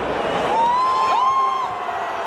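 Football stadium crowd noise, with two long, high calls from a spectator close by, one about half a second in and one about a second in, each rising and then held.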